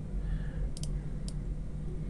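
Computer mouse clicks: a quick double click a little under a second in, then a single click, over a low steady hum.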